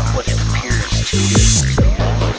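Electronic dance music: a pulsing bass beat with hi-hats, and a hissing swell that builds in the second half and cuts off sharply just before the end.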